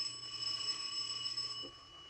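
Apartment doorbell ringing steadily for about two seconds, a radio-drama sound effect, cutting off just before the end.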